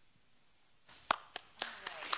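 Congregation starting to applaud: a few separate hand claps begin about a second in, roughly four a second, building toward general applause.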